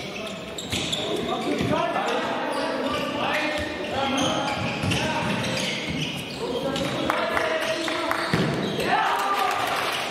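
A handball match in a sports hall: the ball bounces on the hall floor while players' and spectators' voices call out over it.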